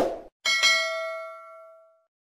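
Subscribe-button sound effect: a short click, then a single bell-like ding about half a second in that rings and fades away over about a second and a half.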